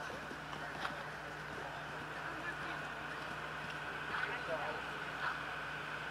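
Indistinct, faraway voices over a steady background hum, with a few faint scattered knocks.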